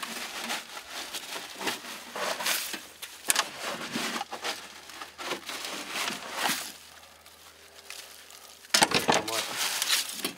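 Dry leaves from a mouse nest crinkling and rustling in irregular bursts as they are pulled out by hand from around a snowmobile's muffler. The rustling eases off for a couple of seconds near the end, then a louder burst follows.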